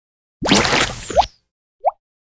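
Cartoon sound effects: a loud noisy swish lasting nearly a second, ending in a quick rising squeak. Near the end comes a short rising plop, as of a drip falling.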